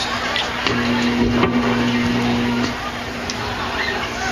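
A live band's amplified instrument holds one steady note for about two seconds, with scattered clicks and knocks of stage gear around it, as the band gets ready between songs.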